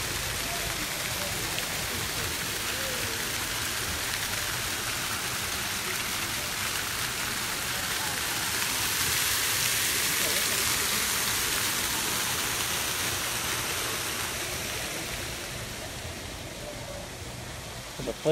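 Splashing of a plaza fountain's ground-level water jets falling back onto the pool and paving: a steady rush of water that swells to its loudest around the middle and fades near the end.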